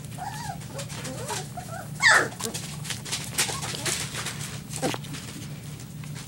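Three-week-old Border Collie puppy whimpering and squeaking, with a loud high yelp that falls in pitch about two seconds in and a shorter falling cry near five seconds.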